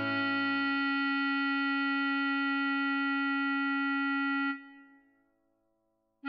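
Bass clarinet holding one long note for about four and a half seconds, following a whole note in the sheet music, then dying away. The last second is near silence for a rest.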